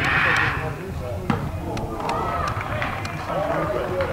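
A football struck hard from a free kick: one sharp thud right at the start. It is followed by a short rush of noise and then voices of players and spectators calling and talking.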